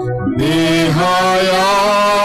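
A Telugu Christian hymn: a voice singing long, gently wavering held notes over a steady sustained accompaniment, coming back in about half a second in after a brief break.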